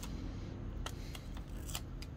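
A vinyl sticker numeral being peeled from its backing paper and clear transfer film: a handful of sharp crinkling ticks from the plastic sheet, over a steady low hum.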